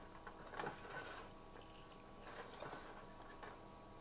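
Faint handling noise of a white plastic developing tray being shifted inside a thin stainless steel tray, with a few light knocks and scrapes.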